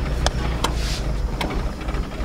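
Mazda Miata's four-cylinder engine running at low revs, heard from inside the cabin, a steady low drone, with a few sharp clicks over it.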